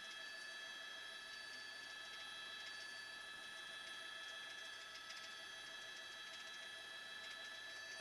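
Faint, steady hiss and hum of a helicopter's intercom audio line with no one talking, with several steady high tones running through it. The intercom has dropped out.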